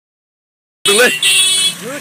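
A vehicle horn sounds one steady honk lasting about half a second, just after a man's short shout.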